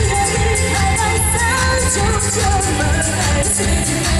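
Live band playing a Mandarin pop song: drums and bass under a wavering lead melody line.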